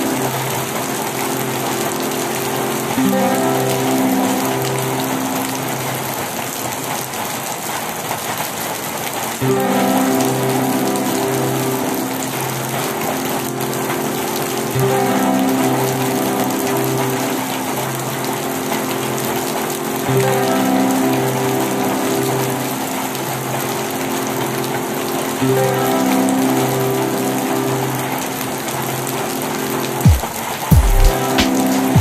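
Steady rain falling on leafy garden foliage, an even hiss. A slow background melody of held notes plays over it, its phrase repeating about every five to six seconds.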